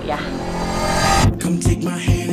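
An editing transition effect: a rising whoosh sweep that cuts off suddenly about a second and a half in. It is followed by background music with a steady kick-drum beat.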